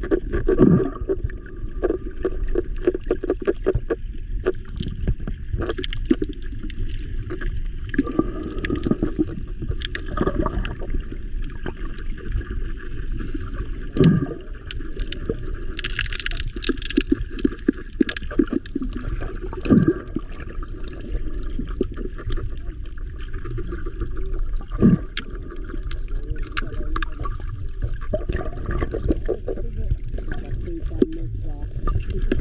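Muffled sound of water heard through a submerged camera in shallow water: a steady low rumble of moving water with frequent small clicks and knocks, and a few louder knocks.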